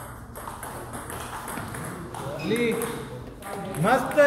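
Table tennis ball clicking off bats and table in a quick rally, then a loud shout about two and a half seconds in and another near the end as the point ends.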